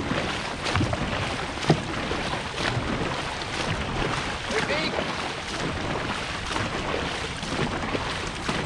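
Dragon boat paddles stroking hard and splashing through the water, a stroke about every second, over rushing water and wind on the microphone. A sharp knock stands out just under two seconds in.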